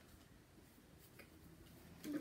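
Near silence: room tone with a couple of faint light ticks.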